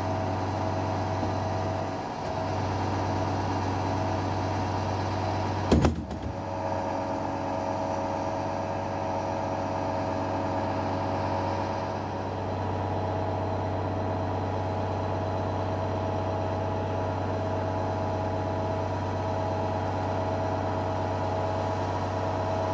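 Tractor-driven diet feeder mixer running steadily: the tractor engine and the PTO-driven vertical augers turning a load of feed make a steady mechanical hum. A sharp knock comes about six seconds in.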